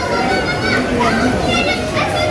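Crowd chatter: many people talking at once, a steady hubbub of overlapping voices, some of them high-pitched, in a large indoor hall.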